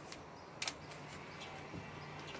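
Canvas Market patio umbrella's tilt joint clicking as the canopy is tilted by hand: a light click at the start, then a sharper one about two-thirds of a second in. A faint steady low hum lies under it.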